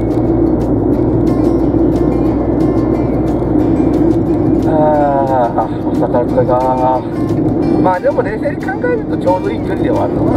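Steady road and engine noise inside a moving car's cabin, with music playing under it. A voice comes in about halfway through and again near the end.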